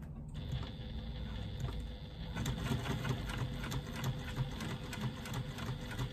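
Electric domestic sewing machine stitching through faux leather laid on 2 mm headliner foam. The motor starts a moment in and runs steadily, with a fast, even rattle of needle strokes over a steady hum.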